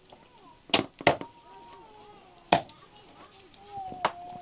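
Cleaver chopping boiled chicken on a round wooden chopping block: four sharp chops, two in quick succession about a second in, another a second and a half later, and a last one at the very end.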